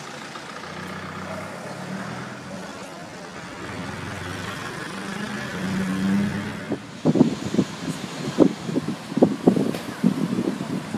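Town street noise with a motor vehicle's engine running at a steady hum. About seven seconds in the sound changes abruptly to a run of short, loud thumps and bumps.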